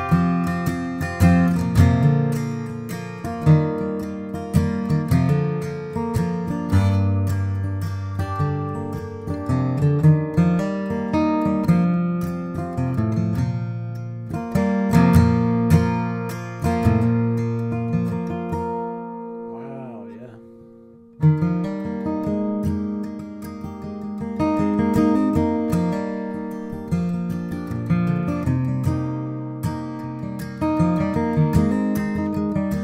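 A 1941 Gibson J-55 mahogany flat-top acoustic guitar being played, with a run of picked notes and strums. Near two-thirds through, the playing stops for a moment and the notes ring out and fade, then it starts again with a sharp attack.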